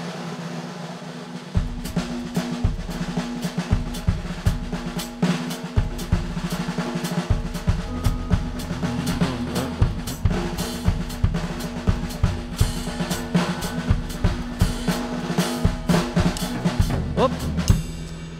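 Drum kit played in a New Orleans second-line marching rhythm: snare strokes with buzzed press rolls, and bass drum hits joining about a second and a half in.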